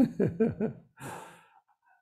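A man laughing: about four short voiced bursts with falling pitch, trailing off into a breathy exhale.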